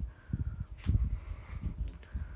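Bell + Howell socket fan light with two blades running on low speed, its breeze buffeting the microphone in irregular low rumbles.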